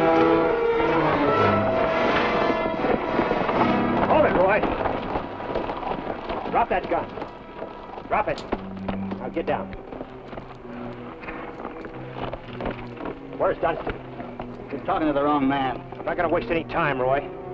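Film soundtrack: an orchestral score plays and fades out over the first few seconds. After that come quieter, scattered sounds of saddled horses shifting and snorting, with a longer wavering vocal sound near the end.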